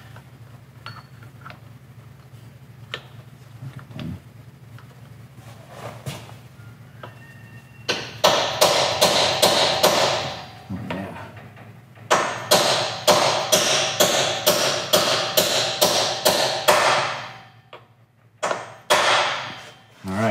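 Hammer driving a pilot bearing into the end of the crankshaft. After a quiet start there is a quick run of metallic taps, a short pause, then a longer run of taps at about three a second. Two final, heavier strikes near the end give the extra thud that shows the bearing is seated.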